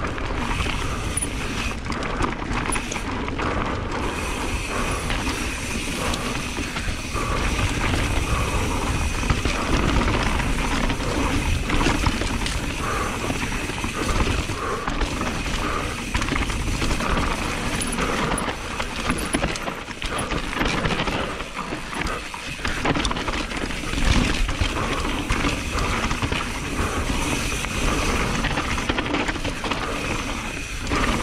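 Radon Swoop 170 full-suspension enduro mountain bike ridden fast down a dry dirt trail: continuous tyre rumble over dirt and stones, with frequent clattering and rattling of chain and bike parts over bumps.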